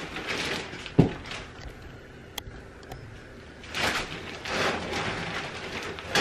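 Loose coconut-fibre substrate (Eco Earth) pouring from a large plastic bag into a glass tank, with the bag rustling, coming in a few bursts. A single thump about a second in.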